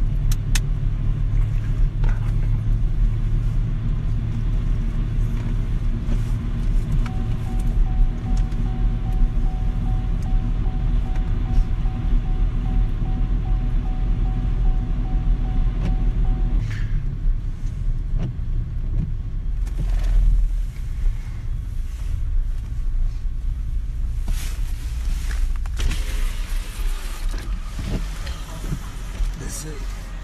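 A car driving, with a steady low rumble from engine and road throughout and a faint steady tone for several seconds in the middle.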